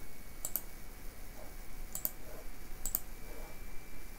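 Computer mouse button clicked three times, each a sharp little double tick, spaced about a second apart.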